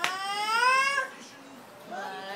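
A toddler's high-pitched squeal, held for about a second and rising slightly in pitch.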